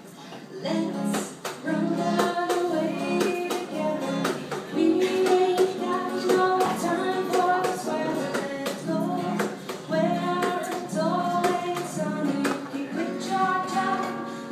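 Music: a woman singing over a strummed guitar, starting about a second in.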